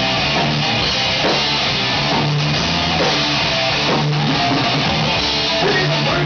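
Live hard rock band playing: electric guitar and bass guitar over a drum kit, loud and steady, with long held bass notes.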